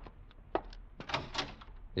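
Radio-drama sound effects: footsteps about two a second, then a door unlatched and opened with a few knocks and rattles about a second in.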